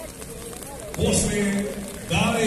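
A man's voice, loud and close, talking or calling out for about a second near the middle. Before it there is a low background of distant spectator chatter. No sound from the bulls themselves stands out.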